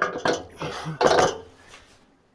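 Metal clunks and scrapes from a railroad marker lamp being fitted onto its bracket on the end of a passenger car, in three short bursts over the first second and a half.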